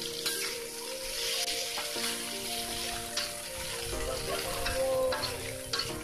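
Sliced green chilies and aromatics sizzling in oil in a wok as a metal spatula stirs them, with a few sharp clicks of the spatula against the pan.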